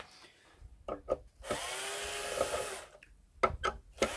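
Power drill-driver backing screws out of the steel base of an all-in-one PC. It runs for just over a second midway, its pitch dipping and rising with the load. A few clicks and knocks come before and after the run.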